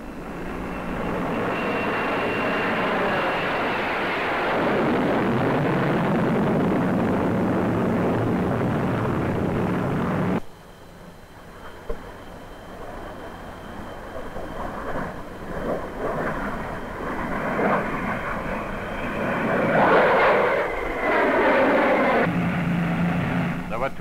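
Avro 707 delta-wing jet, with its single Rolls-Royce Derwent turbojet, flying past: the engine noise builds and then cuts off abruptly about ten seconds in. A second pass builds to its loudest about twenty seconds in, with a falling whine as it goes by.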